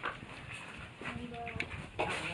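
Children's voices chattering in the background, with a light clink of a spoon on a bowl near the start.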